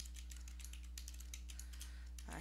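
Typing on a computer keyboard: a quick run of keystrokes over a steady low hum.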